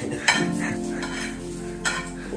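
Spatula stirring scrambled egg in a frying pan on a gas stove, the egg sizzling steadily, with a sharp scrape of the spatula against the pan shortly after the start and another near the end.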